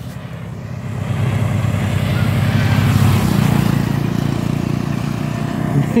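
Wind rushing over the microphone of a moving motorbike, with the bike's engine running underneath. It grows louder about a second in as the bike gets going.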